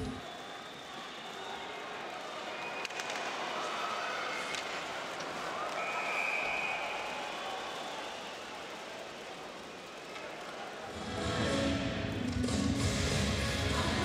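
Ice hockey game sound in an arena: crowd noise with play on the ice and a couple of sharp knocks, like stick on puck. About 11 s in, louder music comes in over it.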